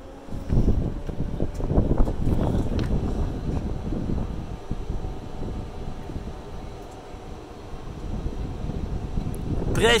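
Wind buffeting the microphone, an uneven low rumble. A word is spoken at the very end.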